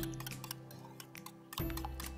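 A small wire whisk ticking rapidly against the side of a bowl as it beats eggs into a sugar syrup, over background music with steady notes.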